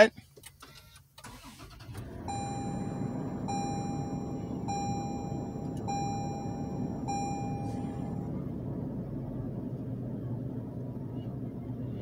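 Toyota 4Runner's 4.0-litre V6 starting about a second after the push-button start is pressed, then idling steadily. A dashboard chime sounds five times, about once a second.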